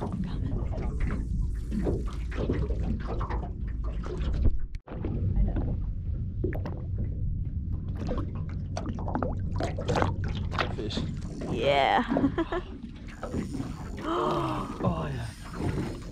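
A few wordless voice sounds, exclamations or laughter, over a steady low rumble of outdoor background noise, with a brief dropout a little under five seconds in.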